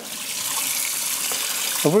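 Kitchen tap running steadily into a sink while a piece of raw beef is rinsed under the stream.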